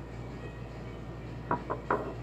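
Low steady room hum, then three soft knocks in quick succession near the end as a glass perfume bottle and its black cylindrical case are handled.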